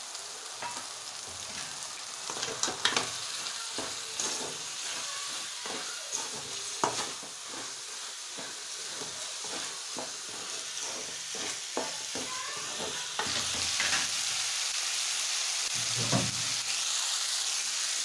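Minced chicken sizzling in a metal pan while a wooden spatula stirs in freshly added spice powders, with repeated scrapes and knocks against the pan. The sizzle grows louder about two-thirds of the way through.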